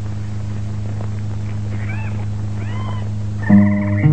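A steady low hum on the film soundtrack, with two short rising-and-falling animal calls about two and three seconds in. About half a second before the end, the band's instrumental intro comes in loudly with sustained notes.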